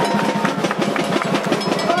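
Samba percussion playing a fast, even rhythm.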